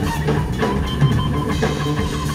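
Live blues-rock trio playing: electric guitar through Marshall amplifiers, electric bass and a drum kit, with the drums prominent.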